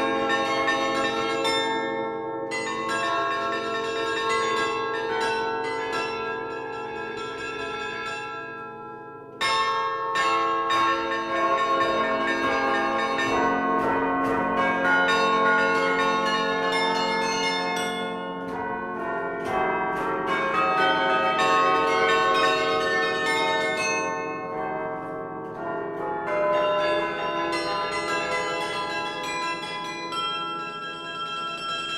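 Hemony carillon, a set of 17th-century cast-bronze tower bells, newly restored and played from its baton keyboard. The bells ring a slow prelude of rapidly repeated notes and sustained ringing chords. The music softens, then comes in suddenly louder about nine seconds in.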